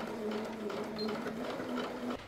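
A Juki domestic sewing machine running a seam at a steady speed, an even motor hum.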